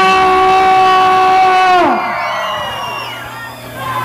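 Live band holding one loud sustained note that slides down in pitch about two seconds in, ending the song, followed by a crowd cheering and whooping.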